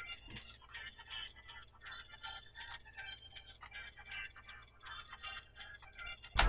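Faint playback of a hip hop beat leaking from headphones, with scattered light clicks.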